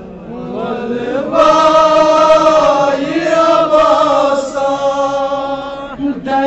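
A man's voice chanting a Kashmiri noha, a Muharram lament, through microphones and a loudspeaker, drawing out long, slowly wavering notes. It starts soft and swells to full strength about a second in.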